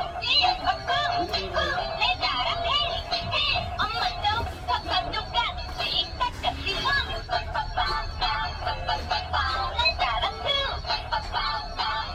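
Dancing cactus plush toy playing its built-in song through its small speaker: a synthetic-sounding vocal melody over music, continuing without a break.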